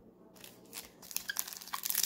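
Foil wrapper of a 10-card baseball card pack crinkling as it is picked up and handled, a run of light crackles starting about half a second in and getting busier.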